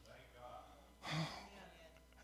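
A man's sharp breath into a microphone about a second in, with fainter breathing before it.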